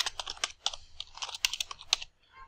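Computer keyboard keys being typed in a quick, irregular run of clicks.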